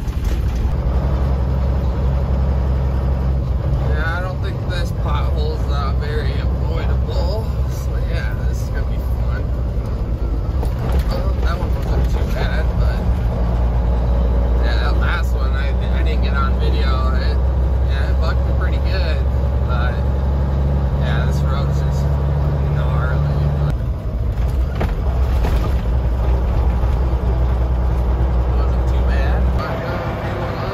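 Kenworth W900 semi's diesel engine droning steadily while it drives, heard from inside the cab. The engine note drops briefly about three quarters of the way through, then carries on.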